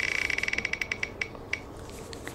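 Spinning number picker wheel on a website ticking as it passes its segments. The ticks start close together and spread further apart as the wheel slows to a stop.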